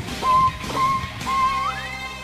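Electric violin playing three short notes, each entered with a quick upward slide, then gliding up an octave into a long held high note.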